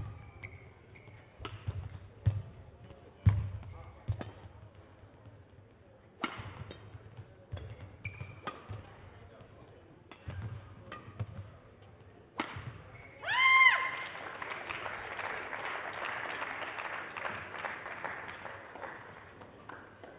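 Badminton rally: sharp racket strikes on the shuttlecock and thuds of players' footwork on the court at irregular intervals for about 12 seconds. About 13 seconds in comes a loud, short high-pitched squeal as the point ends, then spectators applaud for several seconds.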